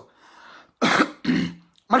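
A man clearing his throat: a faint breath, then two short coughing rasps about a second in.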